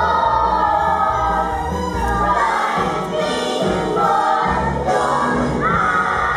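A children's stage cast singing a musical-theatre number together in chorus over instrumental accompaniment, in long held phrases that break and restart every couple of seconds.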